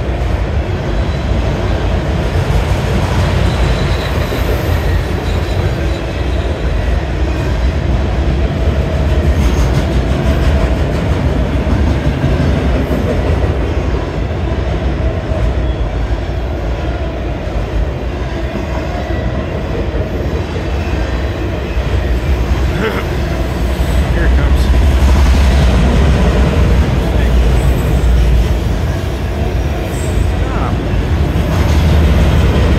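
Autorack freight cars of a CSX train rolling past at speed: a steady noise of steel wheels on the rails, getting louder a few seconds before the end.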